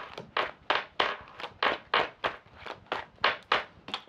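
A tarot deck being shuffled by hand: a quick, even run of soft card slaps, about four a second.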